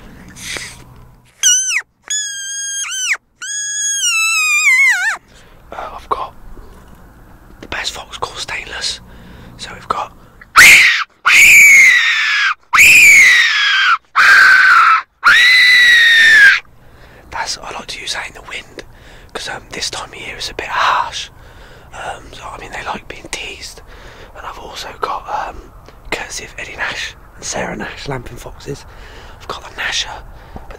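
Small plastic mouth-blown fox call giving high-pitched squeals. First comes a short run of quavering notes, then after a pause of several seconds about five louder, drawn-out wailing squeals, each falling in pitch.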